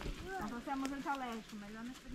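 Quiet, indistinct talking of people nearby, softer than a close voice; no other sound stands out clearly.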